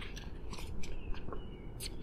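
Scattered soft clicks and rustles of things being handled close by, with a couple of brief faint squeaks near the middle, over a low steady outdoor rumble.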